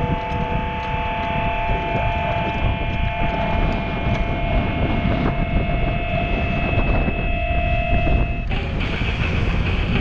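Wind rushing over an action-camera microphone on a moving bicycle, a steady low buffeting. A few steady high tones are held over it and cut off suddenly near the end.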